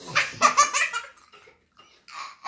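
A young child's belly laugh: a burst of quick, rhythmic laughing pulses that peaks about half a second in and fades after a second.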